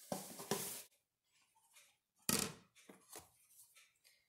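Granulated sugar pouring into a plastic blender jar with a soft hiss that stops about a second in. Then a few light knocks and one louder thunk about halfway through, from a container being handled and set down.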